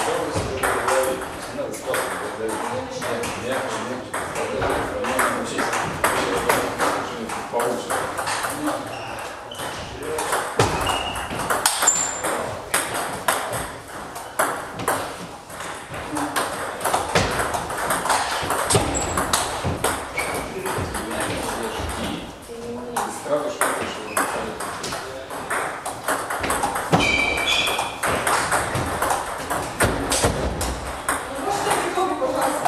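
Table tennis ball clicking off the table and rubber bats in rallies, a quick run of sharp hits throughout, with voices in the background.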